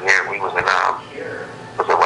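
A man's voice speaking over a telephone line, dropping to a quieter drawn-out sound about a second in.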